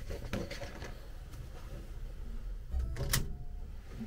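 Faint handling noises, paper and hands moving, with one sharp click about three seconds in.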